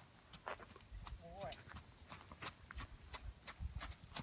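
A horse's hooves clip-clopping on gravel at a walk, a regular series of steps. A brief wavering tone sounds about a second and a half in.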